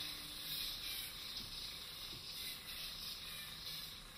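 Faint, steady whooshing hiss of a spinning yo-yo being swung around on its string in a series of around-the-world loops.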